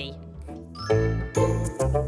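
A short children's TV music jingle: a quick rising sweep, then three short punchy notes with bass.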